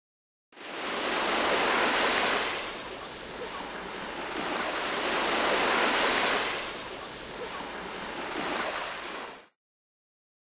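Sea surf washing up a sandy beach, rising and falling twice as two waves run in. It cuts in about half a second in and cuts off suddenly near the end.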